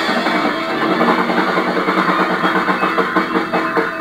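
Live rock band playing an instrumental passage: electric guitars over a drum kit keeping a steady beat, loud and dense.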